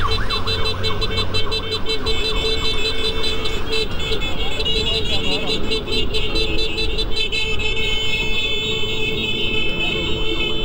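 Escort vehicle sirens sounding, with fast wavering wails in the first couple of seconds and then steady high electronic tones, over wind and road rumble on a moving scooter.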